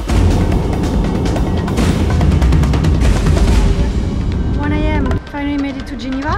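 Background music with a heavy, dense bass, and a gliding melodic line coming in near the end.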